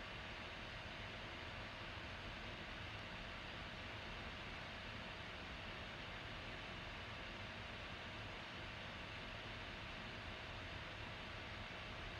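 Faint steady room tone: an even hiss with a thin constant hum underneath and no distinct sounds.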